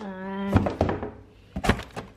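A drawn-out hesitant "uhh", then a few knocks and thuds of cardboard boxes being handled as a lamp box is pulled from a shipping carton, with one sharp knock near the end.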